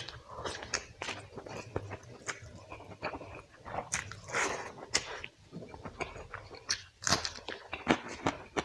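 Close-miked chewing of a handful of rice and chicken curry eaten by hand: many sharp mouth clicks at an uneven pace, with a longer, louder mouth noise about halfway through.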